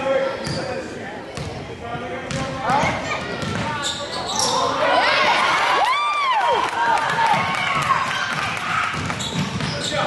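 Basketball dribbled on a gym's hardwood floor, with spectators talking and calling out in the echoing hall. About six seconds in, as players run up court, a high squeal rises and falls, typical of sneakers squeaking on the hardwood.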